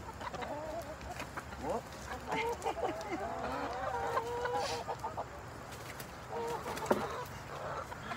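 A flock of backyard hens clucking and calling over one another as they crowd in to be fed, with the calls busiest in the middle. A single sharp knock near the end.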